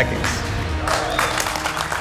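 A small group applauding, with background music underneath.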